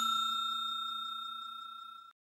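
Notification-bell chime sound effect ringing out: a clear, steady bell tone that fades away evenly.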